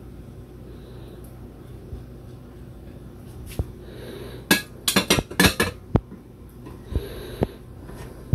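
Metal kitchen tongs clicking and clinking against an air fryer basket as garlic slices are laid on salmon. A quick run of sharp clicks comes about four to six seconds in, with a few single clicks after, over a faint steady low hum.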